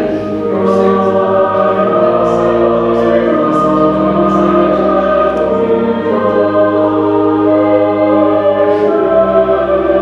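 Voices singing a slow hymn over a sustained accompaniment, with held chords and long low bass notes that change every second or two.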